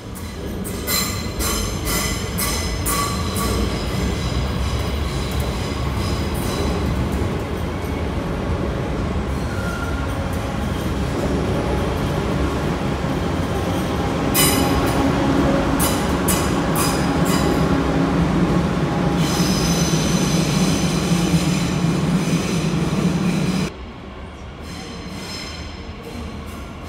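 Electric multiple-unit passenger train running along the platform, with wheel-on-rail clatter and clicks, growing louder, and a high wheel squeal for several seconds; the sound drops suddenly near the end.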